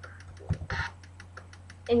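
Faint rapid, evenly spaced clicking over a steady low hum, with a short breathy noise and low thump about half a second in.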